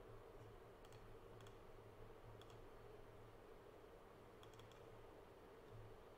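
Near silence over a low steady hum, broken by a few faint clicks at a computer: single clicks about one, one and a half and two and a half seconds in, then a quick run of three a little after four seconds.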